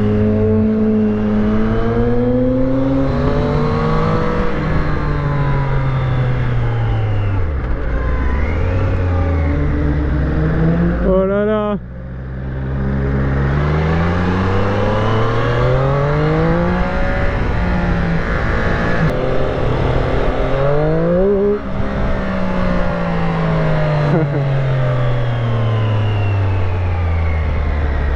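Triumph Street Triple 765 RS inline three-cylinder engine heard from on board, its pitch rising and falling again and again as the bike accelerates and slows through a run of bends. There is a brief drop in engine sound a little before halfway, and a quick rev that cuts off about three-quarters of the way in.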